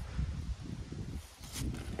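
Low, uneven rumble with faint rustling, and a short crinkle of a plastic packet being handled near the end.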